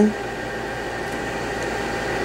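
Small electric fan heater running with a steady rushing noise and a faint hum.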